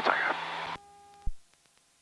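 Cockpit intercom audio in a Cessna 172: the end of a spoken word, then a faint steady hum with a thin tone, a short thud just over a second in, and the feed cuts out to dead silence.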